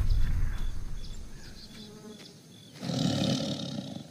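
Tiger roar sound effect: a loud low roar fading away over the first two seconds, then a second, shorter roar about three seconds in.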